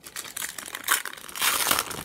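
Foil trading-card pack wrapper crinkling and crackling in the hands as it is torn open, loudest in the second half.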